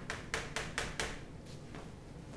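Chalk tapping on a chalkboard as short strokes are written: a quick run of about six sharp taps over the first second.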